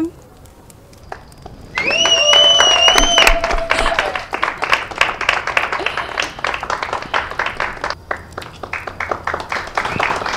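A small group of people clapping and cheering, starting suddenly about two seconds in with a high whistle and voices, then the clapping carries on.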